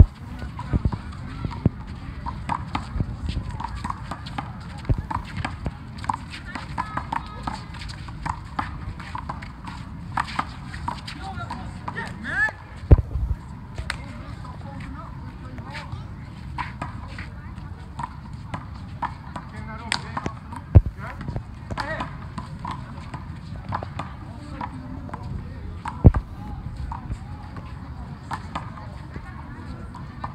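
Outdoor handball court sounds: sharp smacks of a rubber handball against hands, the concrete wall and the pavement, three of them much louder than the rest and well apart, over low chatter of players and onlookers.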